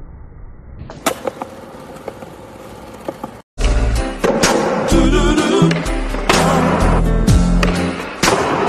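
Skateboard on concrete: wheels rolling, with a sharp clack of the board landing about a second in and a few lighter clacks after. Just past the middle the sound cuts out briefly, and loud music with a heavy beat takes over.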